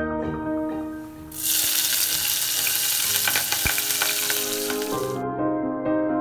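Hot oil in a pan sizzling and crackling as it fries, starting suddenly about a second in and cutting off about five seconds in.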